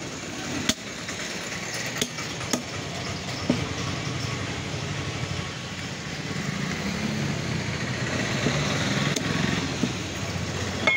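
Meat cleaver chopping goat bones on a wooden stump block: a few sharp chops in the first four seconds and two more near the end. Under them runs a steady engine sound that grows louder in the second half.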